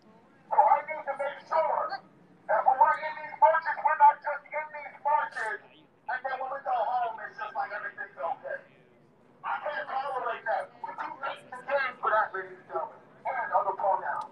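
A person's voice talking in short phrases separated by brief pauses, with a thin, telephone-like sound.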